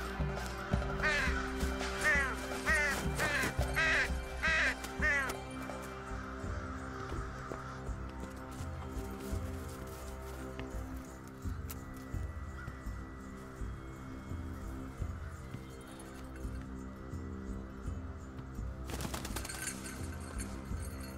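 Crows cawing, about six harsh calls in quick succession over the first five seconds, over background music with sustained tones. A short rushing noise comes near the end.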